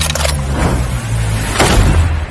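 Cinematic intro sound effects: a heavy, deep rumble throughout, with a rushing whoosh that swells to a peak in the last half-second, leading into a bullet impact.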